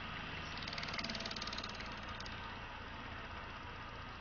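Homemade axial-flux permanent-magnet motor/generator with fibreglass rotor discs, driven by a DC motor controller and running with a steady hum. A fast, high-pitched rattle sits over the hum from about half a second in to just past two seconds.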